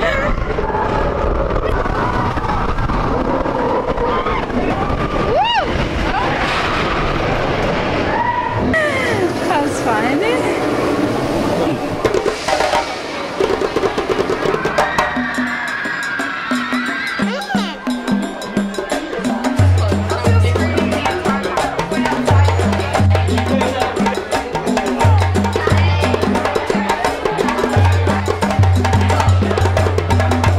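Roller coaster ride: the coaster train rumbling along with riders' shouts over it. About halfway through, background music with a steady beat and a repeating bass line takes over.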